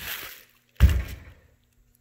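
A heavy brake caliper handled on bubble wrap: a brief rustle, then one dull thunk just under a second in as it is turned over and set down.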